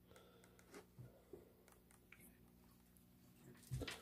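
Near silence: a faint steady low hum with a few faint clicks around a second in.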